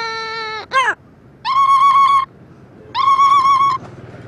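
Amazon parrot imitating a mobile phone ringing: two identical steady ring tones, each just under a second long, with a short gap between them, after a lower held note at the start.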